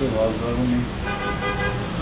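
A car horn sounds once, a steady note lasting just under a second about a second in, over the low steady rumble of street traffic.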